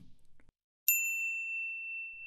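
A single bright ding, a bell-like chime sound effect, struck about a second in after a short near-silent gap; its higher ring fades fast while the main tone rings on steadily.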